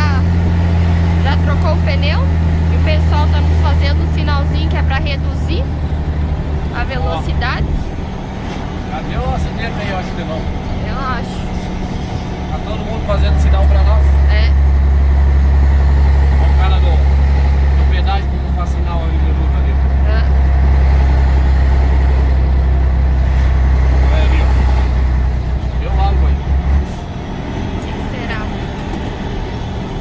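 Scania 113H truck's 11-litre six-cylinder diesel droning inside the cab while driving on the highway. The low drone eases off about eight seconds in, comes back stronger about five seconds later, and drops again near the end.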